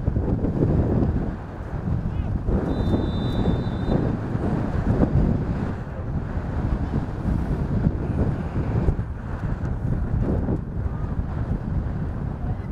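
Wind buffeting the camera microphone, a gusty low rumble throughout. A short high whistle sounds about three seconds in.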